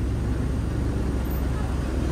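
City bus engine running with a steady low rumble beside its open door.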